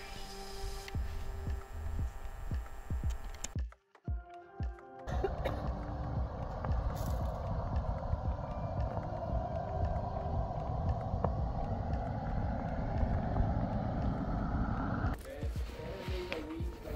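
Background music for the first few seconds, then a brief drop to near silence. After that comes steady road and wind noise from a car driving along a highway, with a low rumble, until near the end.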